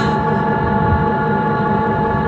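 A sustained electronic chord held steady with no beat, over a low noisy rumble: a break in the DJ's dance music before the full track comes back in.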